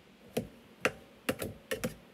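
A metal bench scraper chopping red potatoes in a baking pan: about six sharp clicks and chops, roughly three a second, as the blade cuts through and strikes the pan.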